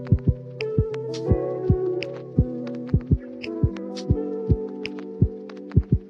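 Lofi hip hop beat: repeated deep kick drums and crisp hi-hat and snare hits over sustained, mellow keyboard chords.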